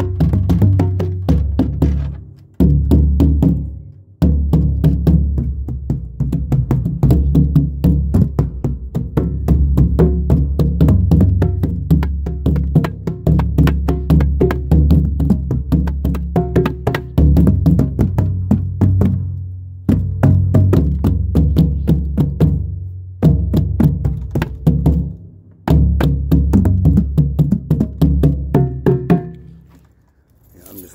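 Drum played in fast, dense strokes over a deep low ring, in long phrases broken by a few short pauses.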